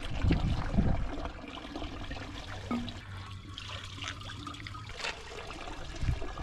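Water trickling from the tap of a village drinking fountain.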